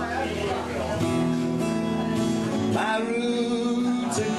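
Acoustic guitars strumming and picking chords over an electric bass guitar, a live country/bluegrass-style instrumental passage with a chord change about a second in and another near three seconds.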